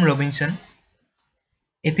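A voice finishes a phrase, then in the pause one short, faint click sounds about a second in before speech resumes.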